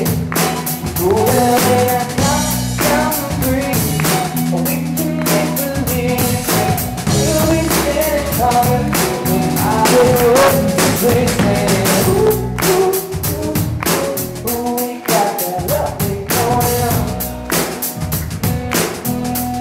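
Live pop-rock band playing: a male voice singing a melody over strummed acoustic guitar, electric guitar and a drum kit keeping a steady beat.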